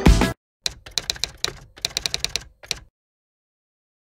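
Intro music cuts off just after the start. About half a second later a typewriter sound effect begins: a quick run of key clacks lasting about two seconds, with a brief pause midway.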